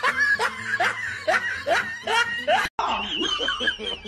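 Snickering laughter: a quick run of short, rising 'hee' sounds, about two or three a second, cut off abruptly about two-thirds of the way through. After the cut comes a different sound with a steady high tone.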